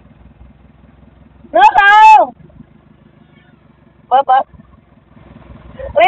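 A small engine running steadily with an even low throb. Over it, a person gives one loud, drawn-out call about two seconds in, and two short calls come a little after four seconds.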